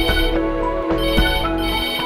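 Office desk telephone ringing with an electronic trill in repeated bursts, over background music with a low bass.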